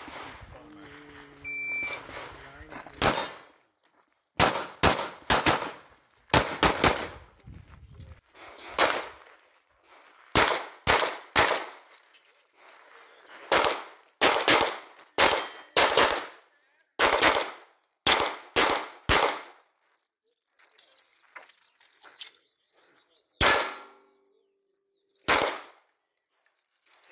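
A shot-timer start beep, then a string of about thirty pistol shots in a practical-shooting course of fire, fired mostly as quick pairs with short breaks between groups. After a pause of a few seconds, two last single shots come near the end.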